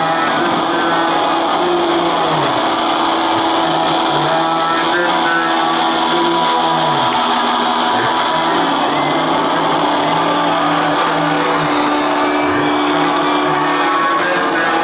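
A rock band playing live and loud: distorted electric guitars sustaining long notes over a bass line that holds each note and then slides down to the next, with no singing.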